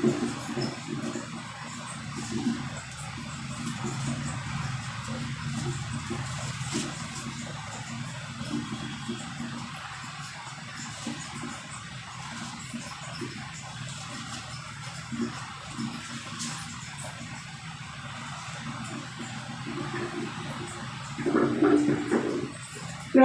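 Bible pages being leafed through close to a handheld microphone, soft irregular paper rustles and handling bumps over a steady low hum.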